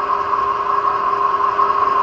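Electric stainless-steel home oil press (screw expeller) running while pressing seeds: a steady motor hum with a high, even whine.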